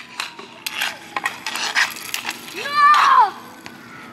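Sharp clacks of hockey sticks against the puck and the court surface during a roller hockey play, several in the first two seconds or so. They are followed about three seconds in by a single shout that rises and falls in pitch.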